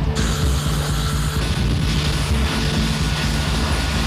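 Loud, steady engine noise of military machinery, with background music underneath.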